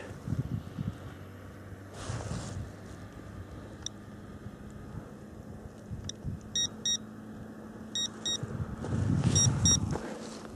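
A handheld SOEKS electromagnetic-field detector beeping: one short beep about four seconds in, then quick double beeps roughly every second and a half. The beeps signal a reading above the normal level of electromagnetic radiation.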